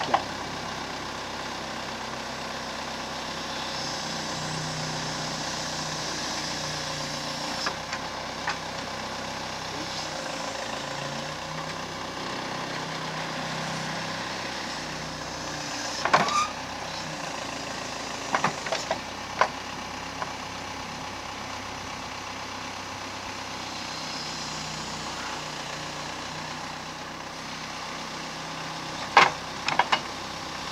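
Case 580C loader backhoe running steadily while its extendable backhoe boom and bucket are worked, the engine note rising at times. Several sharp metal clanks come from the boom and bucket linkage, the loudest about halfway through and near the end.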